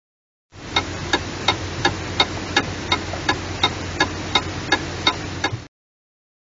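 A regular mechanical ticking, about three ticks a second, over a steady low hum. It starts about half a second in and cuts off abruptly shortly before the end.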